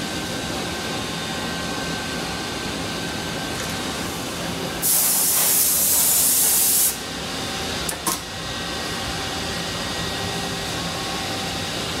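A loud burst of compressed air hisses for about two seconds, starting about five seconds in, over the steady hum of running CNC machinery; a short click follows about a second later.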